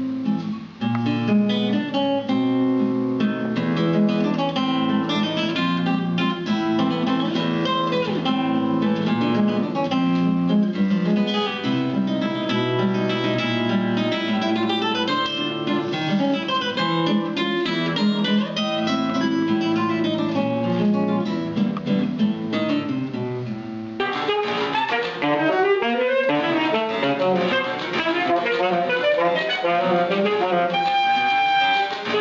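Solo classical guitar playing a piece, plucked note by note. About 24 seconds in it cuts abruptly to a saxophone with piano accompaniment.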